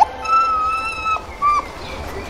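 A fox calling: a short sharp sound at the very start, then one long, even, high-pitched whine lasting about a second that drops at the end, followed by a second, shorter whine.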